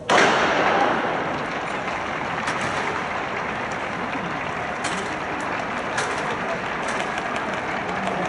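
Starting gun for a 100 m hurdles race: one loud crack right at the start that rings away over about a second. Steady stadium crowd noise follows, with scattered sharp knocks from about five seconds in as the hurdles are clipped.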